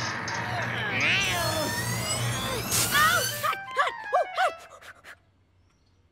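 Cartoon cymbal crash whose loud ringing wash holds for about three and a half seconds, with gliding cries over it, then breaks off. A few short pitched musical notes follow and die away about five seconds in.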